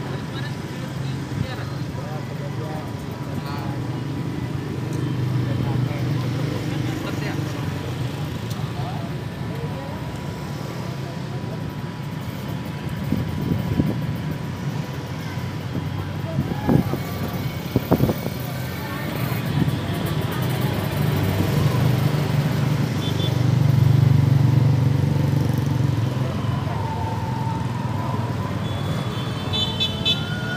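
Steady low rumble of engines and street traffic with indistinct voices of a crowd, swelling louder about two-thirds of the way in; a few sharp knocks stand out just past halfway.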